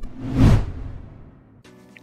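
A whoosh sound effect from an animated logo intro, swelling about half a second in and then fading away over the next second.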